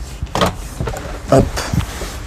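A few short knocks and clunks as a camper van's telescopic dinette table is handled and set back up from its bed position, with one spoken "hop".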